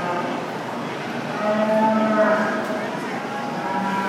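A goat bleating: one long call about a second and a half in, then another starting near the end, over the steady murmur of an arena crowd.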